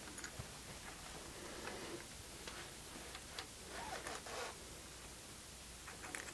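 Faint small clicks and scrapes of metal parts being handled and fitted by hand in the hook assembly of a Cobra Class 4 sewing machine, with a short run of scraping about four seconds in.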